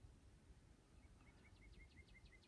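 Near silence, with a small bird faintly chirping a quick run of short, high notes, about six a second, starting about a second in.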